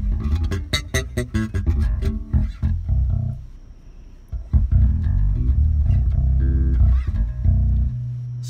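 MTD electric bass with new Ernie Ball Cobalt strings, played through a Jeep's car stereo. A run of quick plucked low notes, a brief lull a few seconds in, then long sustained low notes.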